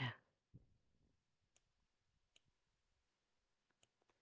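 Near silence: a brief spoken "yeah" at the start, then a few faint, separate clicks from working the computer whiteboard.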